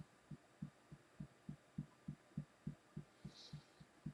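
Fingertips tapping on the collarbone in EFT tapping: faint, soft thumps in a steady rhythm of about three a second.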